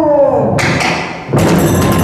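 A performer's drawn-out chanted line trails off, two sharp clicks follow, and about a second and a half in the kagura ensemble comes in loud: a big taiko drum beating under the hissing clash of small hand cymbals.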